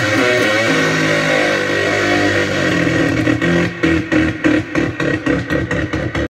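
Electric bass soloing through a Keeley-modded Metal Zone distortion pedal. Sustained notes with wavering, bent pitch give way about three and a half seconds in to fast, choppy repeated picked notes.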